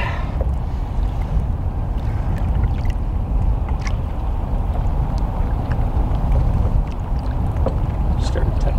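Steady low rumble of water moving against the side of a boat, with a few faint light splashes and ticks as a musky is held by the tail in the water.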